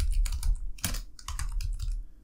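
Computer keyboard typing: an uneven run of keystroke clicks as a short line of text is typed.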